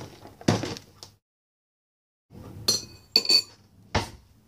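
Knocks and handling close to the microphone, a second of dead silence, then a bowl clinking as it is set down and knocked about, with short ringing clinks, and one more knock at the end.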